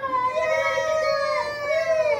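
Women's voices holding long, high, wavering 'ooooh' notes while balancing in a core-strength pose, two voices overlapping, then dropping in pitch as they let go near the end.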